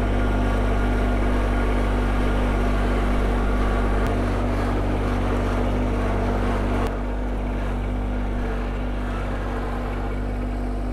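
Small garden tractor's engine running steadily with a low hum. A brief click comes about four seconds in and another near seven seconds, after which the engine sounds a little quieter.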